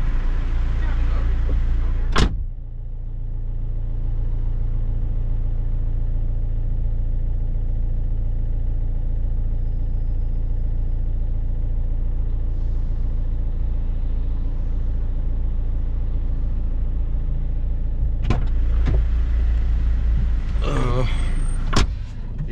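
Opel Zafira 2.0 DTI four-cylinder turbodiesel idling steadily, heard from inside the cabin. A car door shuts about two seconds in, and is opened and shut again near the end.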